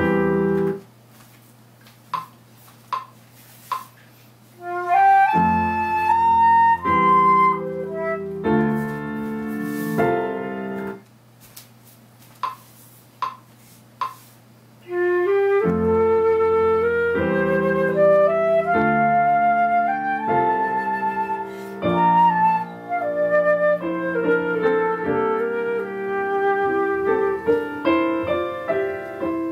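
Concert flute playing a melody over piano accompaniment, in two phrases with pauses between them. A few short ticks sound in the pauses.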